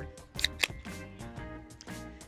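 An aluminium beer can snapped open, a sharp crack and hiss about half a second in, over background music.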